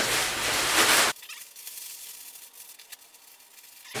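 Nylon anorak fabric rustling loudly as the jacket is crammed into its own front pouch, cutting off abruptly about a second in. After that, only faint rustling and a few light clicks.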